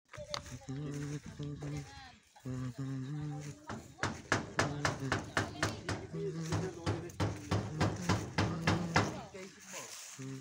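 People's voices without clear words: a few drawn-out, steady-pitched calls, then a long run of short, rhythmic vocal bursts, about three or four a second.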